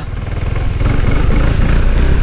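Maxi-scooter engine running on the move, a low rumble that swells a little about half a second in.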